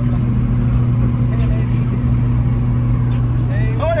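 Honda Acty 4WD mini truck's small engine running steadily at cruising speed, about 90 km/h, heard inside the cab over road and tyre noise. The engine note drops a little near the end.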